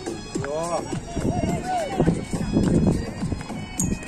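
Hindi rap song playing, with a sung vocal line over a beat.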